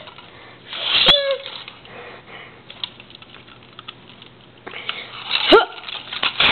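Two short breathy vocal sound effects made by mouth for a toy fight: one about a second in that slides down in pitch, another near the end that slides up. Between them come light clicks of plastic figure pieces being handled, over a faint steady hum.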